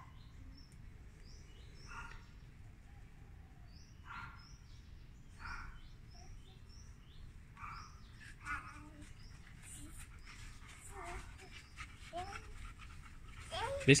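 Faint small-bird chirps, short high notes repeating every second or so, with soft scuffing and rustling mixed in.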